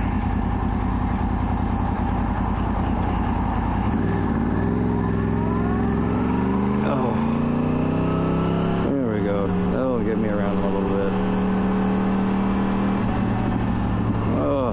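Sport motorcycle engine pulling away from slow traffic: a low steady note for about four seconds, then rising in pitch as it accelerates. It shifts up twice, once about seven seconds in and once about nine seconds in, then holds a steady cruising note. Wind rush on the helmet camera runs underneath.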